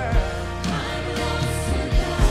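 Live gospel praise music from a church worship band: held keyboard chords over bass, with singing faint beneath. A drum hit comes just after the start and another near the end.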